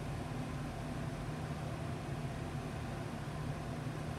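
Steady low hum with a faint even hiss: background room noise, with no distinct event.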